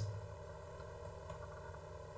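Faint steady background hum and hiss of the recording, made up of several thin, unchanging tones and with no other events.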